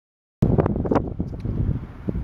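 Silence, then about half a second in, wind buffeting the microphone starts suddenly as a low rumble, with a few sharp clicks in its first half-second.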